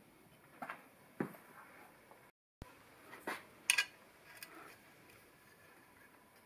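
Steel Allen keys being handled, with a few light metallic clinks as keys knock against each other and the metal work. The loudest clinks come as a quick pair a little before four seconds in, after a brief gap of silence.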